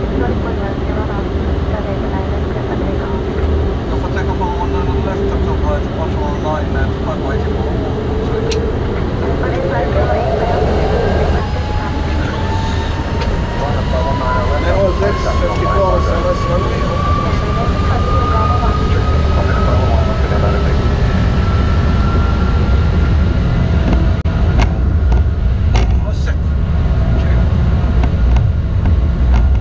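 Airliner jet engines spooling up for takeoff heard in the cockpit: a low rumble under a whine that climbs steadily in pitch and grows louder as thrust comes up and the takeoff roll begins.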